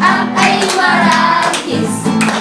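Children and a man singing together to an acoustic guitar, with hand clapping.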